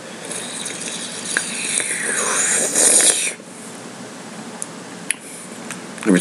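A man's long, hissing breath through the mouth that grows louder for about three seconds and stops abruptly, a reaction to the burn of a hot chili pepper; a couple of small mouth clicks follow.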